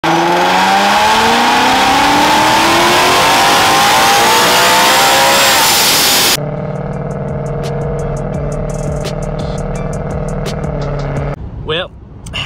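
Supercharged 5.0 Coyote V8 of a 2020 Mustang GT with an ESS G3R supercharger at wide-open throttle on a chassis dyno, very loud, its pitch climbing steadily for about six seconds with a high whine rising alongside. It cuts off suddenly and gives way to a quieter steady drone with regular ticks.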